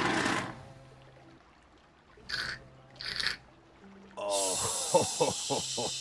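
A drink being slurped through a straw: two short slurps, then from about four seconds in a longer, louder slurp mixed with voiced gulping groans. Faint background music runs underneath.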